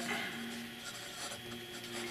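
Cross Townsend fountain pen's 18k gold medium nib writing cursive on paper: a faint, light scratching of the nib gliding over the page.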